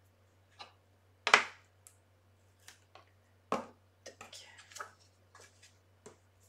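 Hands working double-sided tape and a clear plastic window-paper sheet on a table: two short sharp crackles, one about a second in and one past the middle, with lighter rustles and clicks near the end.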